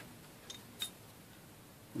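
Two faint, light clicks about a third of a second apart from the SIG Sauer SP2022's separate recoil spring and guide rod being handled at the stripped slide during reassembly; otherwise quiet.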